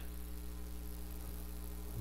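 Steady low electrical mains hum with a faint hiss underneath.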